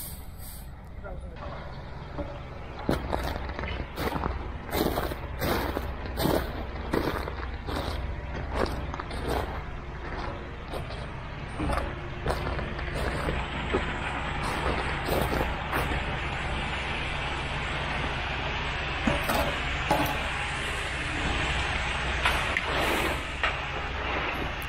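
Concrete mixer truck's diesel engine running steadily, with short knocks and scrapes from hand tools on concrete. Later on, concrete is sliding down the truck's chute onto the mesh-reinforced pad form with a steady rushing sound.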